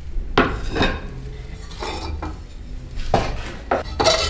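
Unglazed ceramic bowls and plates clinking against each other and the kiln shelf as they are lifted out of an electric kiln: about six sharp, separate clinks with a short ring.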